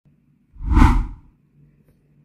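A single whoosh transition effect with a deep low end, swelling up about half a second in and fading out within about a second, accompanying an animated intro title.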